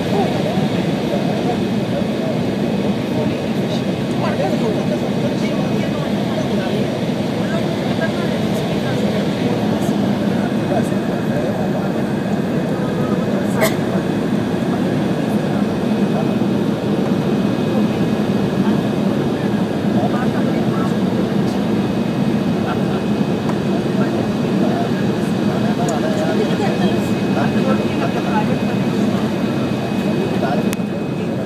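Steady cabin noise of an Embraer 170 descending on approach, its General Electric CF34-8E turbofan engines running with a low hum and a faint steady high whine, heard inside the cabin. A single sharp click about halfway through.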